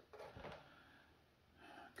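Near silence: room tone, with a faint brief sound in the first half second and another shortly before the end.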